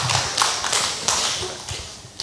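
Scattered applause from a congregation, a patter of many hand claps that thins out and fades away.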